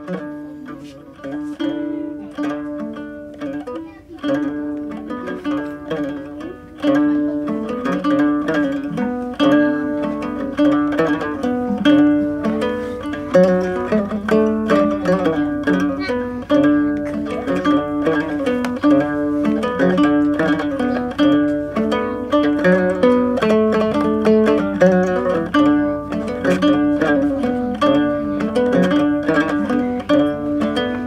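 Instrumental opening of a West African song: acoustic guitar and a second plucked string instrument playing repeated figures. The playing grows fuller and louder about seven seconds in.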